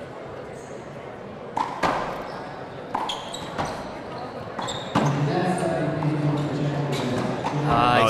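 A handball smacked by hand against the front wall and bouncing on a wooden court floor during a rally: about eight sharp smacks at uneven gaps, the loudest about two seconds in, each echoing briefly in a large hall.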